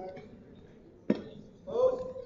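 A single sharp smack about a second in, followed near the end by a short call from a man's voice.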